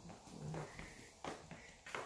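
Faint footsteps on a hardwood floor: two soft steps in the second half, with a brief low voice-like sound about half a second in.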